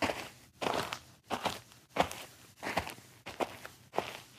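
Footstep sound effect for a walking cartoon character: a steady series of steps, about three every two seconds.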